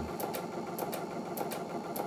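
Brother computerised sewing and embroidery machine running steadily as it sews a sideways stitch with the N foot, the fabric being fed side to side, with a light ticking over a steady motor hum.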